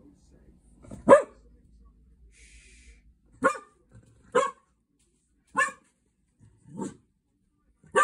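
Cocker spaniel barking at guinea pigs in their cage: a series of short single barks about a second apart, the first one the loudest.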